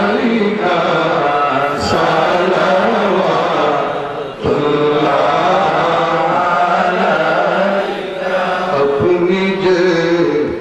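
Men's voices chanting a melodic devotional chant, amplified through a microphone and loudspeakers, continuous apart from a brief pause for breath about four seconds in.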